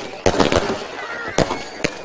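Aerial fireworks bursting overhead: a quick cluster of sharp bangs in the first half second, then single bangs about a second and a half in and near the end, over a crackling background.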